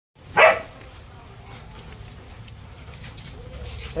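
A dog barks once, sharply, about half a second in, then a faint low steady rumble continues.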